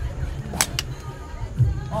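Golf club striking a ball off a turf mat: a sharp crack about halfway through, with a second click a fifth of a second after it.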